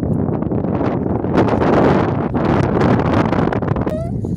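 Wind buffeting the microphone: a loud, rough rumble that swells about halfway through.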